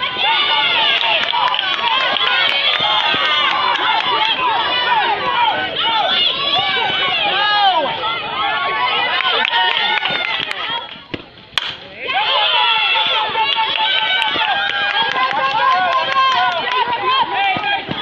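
Spectators and players yelling and cheering over one another as runners advance in a softball game. The shouting runs on with a brief lull past the middle, broken by a single sharp crack.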